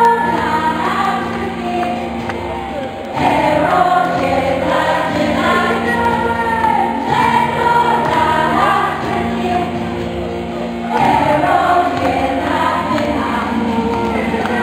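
Women's folk vocal group singing in chorus through a PA, a lead voice on microphone, over a steady accompaniment. Sung phrases begin near the start, about three seconds in and again about eleven seconds in.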